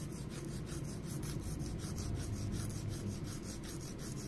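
Nail file rasping back and forth across a long fingernail in quick, even strokes, about five a second.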